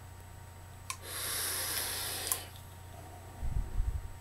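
A drag on a vape: a click about a second in, then about a second and a half of steady airy hiss as the dripper's coil fires and air is drawn through it, ending with another click. Near the end, low puffs of breath hit the microphone as the vapour is exhaled.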